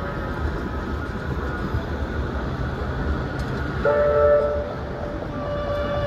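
Manchester Metrolink M5000 tram running along street track with a steady low rumble. About four seconds in, a short two-note tone sounds, and a single held tone begins near the end.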